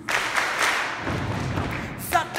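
Audience applause in a concert hall, breaking out the instant the band's song stops short and easing slightly toward the end.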